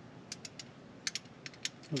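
Socket ratchet wrench with a long extension clicking as it is worked on a bolt: about a dozen short, sharp metallic clicks at an uneven pace.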